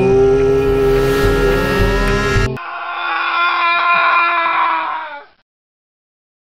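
Cartoon soundtrack: wavering, gliding eerie tones over a low rumble. About two and a half seconds in they cut off abruptly, giving way to a thinner, muffled stretch of pitched sound, likely music, which fades out about five seconds in.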